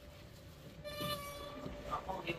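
A metal door's hinge squealing as the door swings open: one steady, high-pitched squeal about a second long, starting about halfway through.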